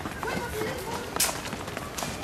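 Running footsteps of several children on a concrete sidewalk: a quick, irregular patter of steps.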